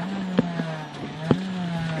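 Honda Integra rally car's engine heard from inside the cabin, running with a steady note that dips briefly about a second in, with two sharp knocks about half a second and a second and a half in.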